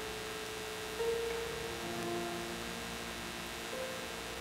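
A quiet passage of concert piano, a few soft, held notes entering one after another, over a steady mains hum on an old live recording.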